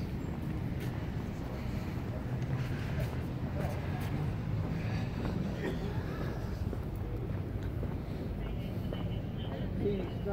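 Steady outdoor background of distant road traffic, with faint voices talking in the distance.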